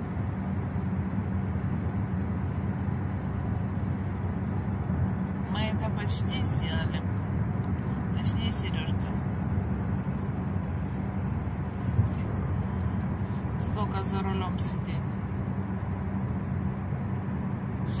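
Steady road and engine noise inside a car's cabin at motorway speed: a low drone with tyre rumble. Faint voices come and go, and there is a single short bump about two-thirds of the way in.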